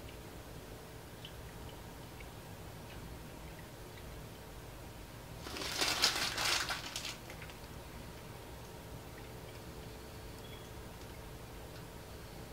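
A plastic ink bottle crinkling for about a second and a half, about halfway through, as UV ink is poured from it into a UV printer's ink tank. A faint steady hum lies underneath.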